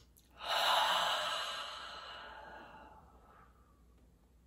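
A person's slow, deep exhale: one long sigh that starts about half a second in and fades away over about three seconds, a deliberate calming breath.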